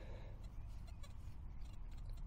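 Faint handling sounds of gloved fingers rubbing soil from a small dug-up find, over a steady low rumble.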